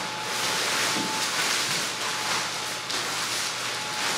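Blower fan of an inflatable T-Rex costume running with a steady whoosh and a faint thin whine, while the costume's thin nylon fabric rustles as it is pulled on.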